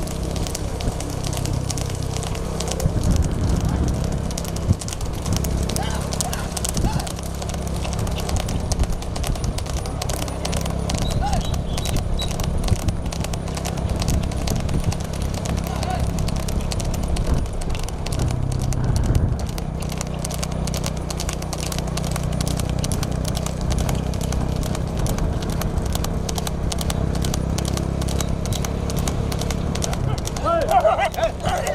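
Hoofbeats of several horses trotting fast on asphalt, pulling light two-wheeled racing carts, over a steady low engine rumble from the motor vehicle running alongside.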